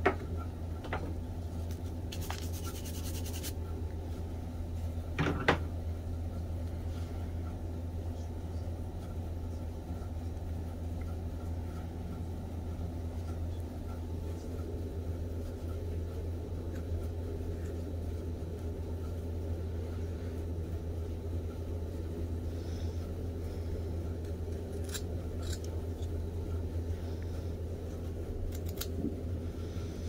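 A steady low hum, with a few faint cuts and scrapes of a rough-out carving knife on a small block of wood. There is a short rasping cut about two seconds in and a sharper click about five seconds in.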